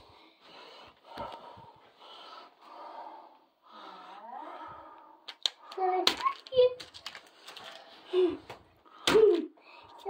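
Hushed whispering voices, a child's among them. In the second half these give way to louder voice sounds, likely stifled laughter, and a few sharp clicks from hands handling a box lid.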